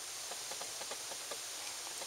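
Steady low background hiss with no distinct events.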